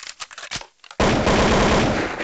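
Sound effect of automatic gunfire. A few scattered clicks come first, then about a second in a loud, rapid burst of shots begins and keeps going.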